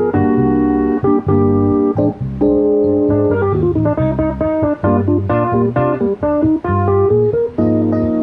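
Instrumental duo of electric bass guitar and a Yamaha CP stage keyboard: bass notes under held keyboard chords, with a falling run about three seconds in and busier, quicker notes after.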